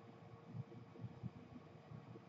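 Near silence: faint outdoor background hum, with a few soft low rumbles about half a second and a second in.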